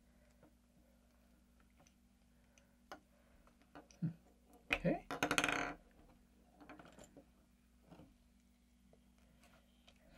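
Quiet tabletop handling: small plastic clicks and taps as LEGO pieces are fitted together and Play-Doh is pressed into a plastic mold, with one brief, louder buzzy sound about five seconds in.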